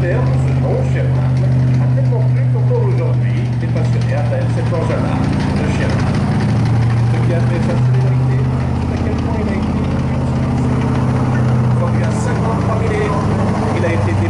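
Sherman M4A4 tank driving slowly past, its engine running with a deep, steady note, with voices around it.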